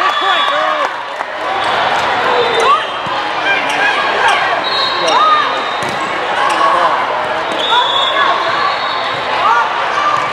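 Indoor volleyball rally on a sport court: sharp smacks of the ball being hit and many short squeaks of sneakers on the court, over a steady din of voices and shouts from players and spectators.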